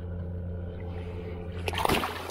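Water splashing at the side of a boat as a small tarpon is released: one short burst of splashing near the end, over a steady low hum.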